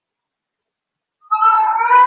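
A domestic animal's single long call, pitched and rising slightly, starting just over a second in.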